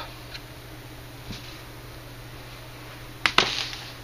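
Two sharp clicks in quick succession a little over three seconds in, with a fainter click earlier, over a low steady hum.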